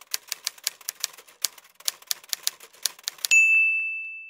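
Typewriter sound effect: keys clacking quickly, about six or seven a second, then a bright bell ding a little over three seconds in that rings on and fades.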